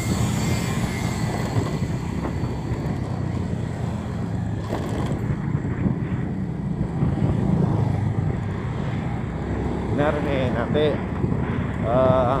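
Steady low drone of the engine of the vehicle carrying the camera, with road noise, as it travels along at an even speed.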